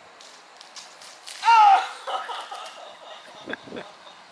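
Water blasters firing in a duel, with spray hitting a person; about a second and a half in comes a sharp cry with a falling pitch as the water strikes, and a laugh near the end.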